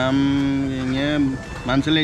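A man's long, steady closed-mouth hum ("mmm") on one low pitch, a hesitation while he searches for a word, lasting about a second and a half before his speech resumes near the end.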